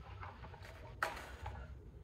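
Faint rustling of a cardboard box compartment being opened and a coiled cable being lifted out, with one sharp click about a second in, over a low steady hum.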